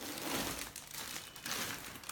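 Clear plastic packing wrap crinkling as it is pulled out of a handbag by hand, in two rustling spells: a longer one at the start and a shorter one about halfway through.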